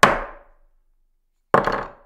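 Hard struck impacts, each ringing briefly as it dies away: one strike right at the start, then a rattling, doubled strike about a second and a half in.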